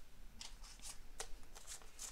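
Paper banknotes rustling as a stack of US dollar bills is picked up and handled for counting: a few short, soft, crisp rustles.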